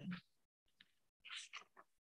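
Near silence in a pause between spoken phrases, with one faint, short sound about one and a half seconds in.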